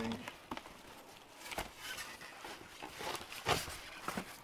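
Cardboard box and polystyrene foam packing being handled and pulled apart by hand: scattered rustles and knocks, with two sharper knocks, one about a second and a half in and one near the end.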